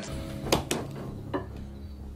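A few light clinks of dishes and cutlery, about half a second and again about one and a half seconds in, over quiet, low background music.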